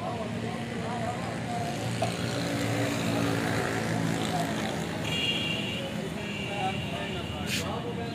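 Steady outdoor background: a continuous low engine-like hum, with indistinct voices mixed in.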